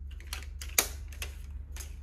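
Sharp plastic clicks and light rattles, about seven in two seconds, the loudest a little under halfway through, as a plastic multi-purpose paper trimmer is handled and tilted. A steady low hum runs underneath.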